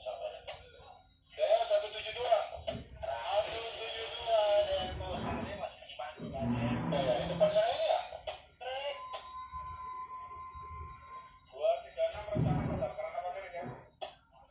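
Indistinct men's voices talking in a ship's wheelhouse, with a steady high tone lasting about two seconds a little past the middle and a faint steady hum beneath.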